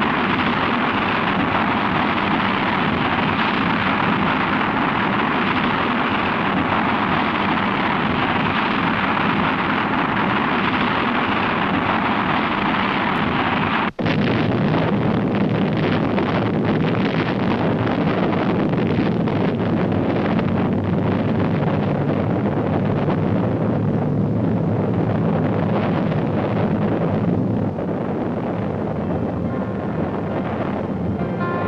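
Rocket engines firing at launch: a loud, steady rush of exhaust noise that cuts out for an instant about halfway through and then carries on with a crackling edge. It eases slightly near the end, as faint music comes in.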